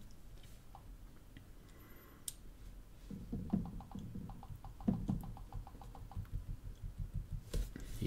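Quick fingertip taps on smartphone touchscreens, a fast run of light ticks at about four or five a second with a few duller knocks mixed in. This is repeated tapping of the Android version entry in Settings, which opens the hidden version screen.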